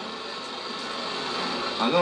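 Steady, even background noise, a featureless room hiss with no distinct events; a voice starts right at the end.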